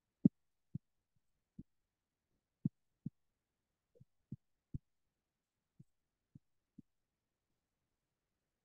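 Computer mouse clicks, heard as dull low thumps: about eleven single clicks at irregular intervals, the loudest near the start.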